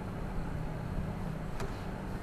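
Steady low hum of background room noise, with a single sharp click about one and a half seconds in.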